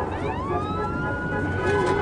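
A high, siren-like whine that rises in pitch over about half a second and then holds steady.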